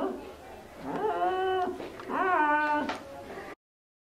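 Two drawn-out wailing cries, each rising and then falling in pitch, about a second apart, after which the sound cuts off abruptly into silence.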